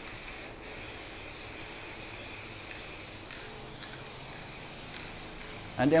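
Aerosol spray-paint can spraying matte paint onto a plywood panel: a steady hiss, broken off briefly about half a second in.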